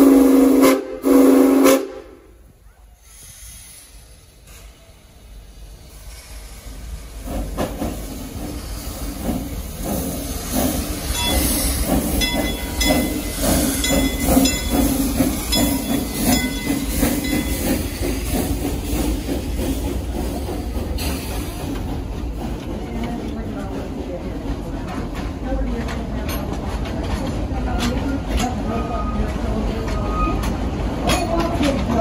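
Steam locomotive No. 504 sounds two short blasts on its steam whistle, the signal to move forward. After a few quiet seconds it starts chuffing and hissing steam, and the coaches roll along behind as it pulls away, the sound building and then holding steady.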